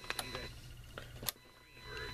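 Fluorescent lights giving a low, steady electrical buzz, broken by a few sharp clicks, the loudest about a second and a half in.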